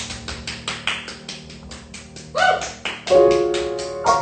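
Live solo music: a fast, even run of percussive taps, about seven a second, with little pitch to them. A brief rising note comes about two and a half seconds in, then a loud sustained piano chord about three seconds in.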